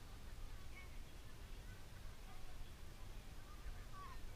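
Wind noise on a small camera microphone, with faint distant voices calling across an open field.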